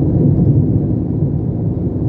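Steady low rumble of road and engine noise inside a car's cabin while cruising on a paved highway.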